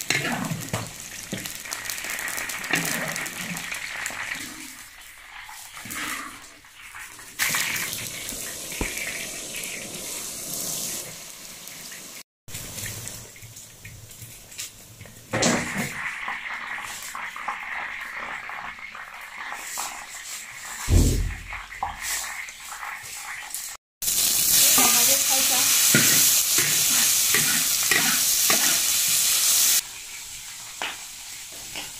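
Eggplant strips frying in a wok of hot oil, a steady sizzle broken by scrapes and clicks of a wire strainer against the wok as the strips are lifted out. Near the end a louder, steady sizzle as sliced pork fries in the wok.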